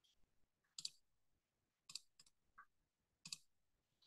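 Near silence broken by about four faint, short clicks, some in quick pairs.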